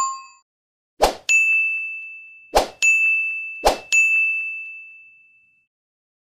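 Bell-ding sound effects for an animated subscribe end screen. A chime fades out at the start; then three times over the next few seconds a short knock is followed by a bright, high ding that rings and fades, the last one ringing longest.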